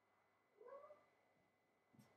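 A kitten gives a single short, high meow about half a second in. A soft thump follows near the end.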